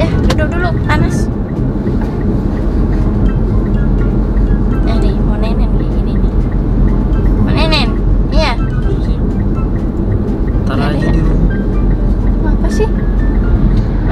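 Car cabin noise of a car on the move, a steady low road-and-engine rumble, under background music, with a voice heard briefly a few times.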